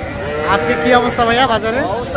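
A young calf mooing once, one long call lasting about a second and a half, with people talking around it.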